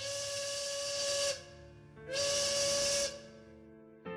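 Two blasts of a rooftop signal whistle, each just over a second long, with a quick rise in pitch at the start and a hiss riding over the steady tone.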